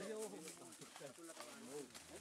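Faint, indistinct voices of people talking in the background, over a light hiss.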